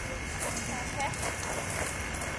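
Faint distant voices over a steady background hiss, with no close or loud sound.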